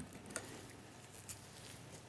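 A few faint, light clicks of hand-held steel dental instruments, a mouth mirror and probe, being handled and passed between hands, over quiet room tone.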